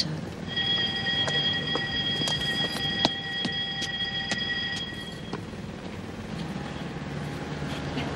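A bell ringing with a steady, pitched ring for about five seconds, then stopping abruptly: the bell that calls the prisoners back inside.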